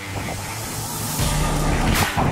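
Background music with sustained bass notes under a rush of churning-water spray noise that swells toward the end.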